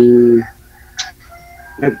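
Speech over a video call: a drawn-out hesitation vowel that stops about half a second in, a short breathy hiss about a second in, then a pause with faint steady tones before talking resumes near the end.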